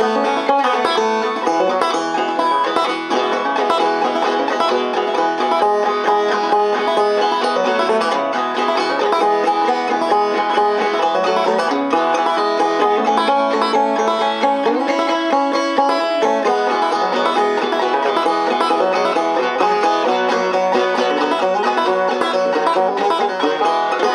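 Long-neck five-string banjo played clawhammer style, a continuous run of plucked notes at an even, steady level.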